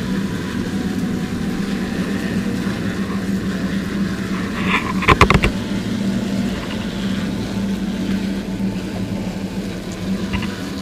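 Steady low motor hum of a powered duster blowing insecticide powder up into a chimney flue to treat a hornet nest. A quick cluster of sharp knocks comes about five seconds in.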